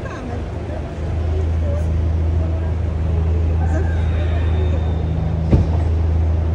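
A motor vehicle's engine running with a steady low hum that sets in about a second in, with a single sharp knock near the end.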